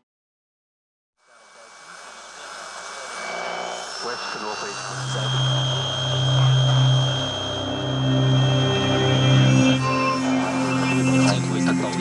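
About a second of silence, then a background music track fades in and builds to a steady level with a sustained low drone.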